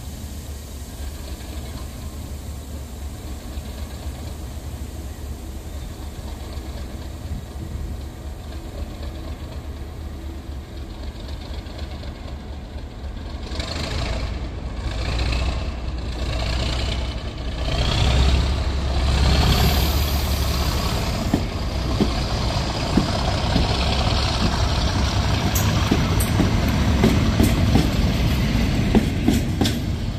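Class 37 diesel-electric locomotive's English Electric engine running, growing louder as it draws alongside with its train. A rising whine comes about halfway through, and sharp wheel clicks over the rail joints come near the end.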